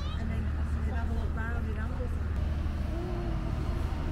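Voices of passers-by in snatches over a steady low rumble.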